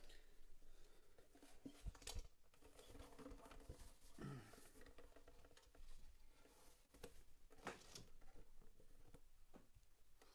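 Near silence: room tone with a few faint scattered clicks and small handling knocks.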